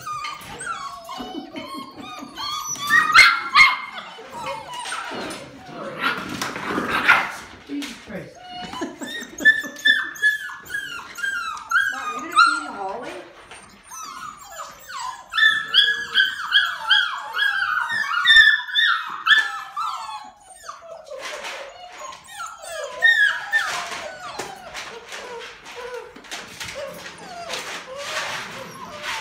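Golden retriever puppies whining and yelping in quick strings of short, high cries, with brief knocks and scrabbling in between.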